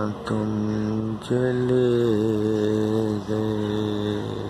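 A man singing long, held notes in a low voice with no instruments, breaking briefly about a quarter second and a second and a quarter in, the pitch wavering a little near the middle.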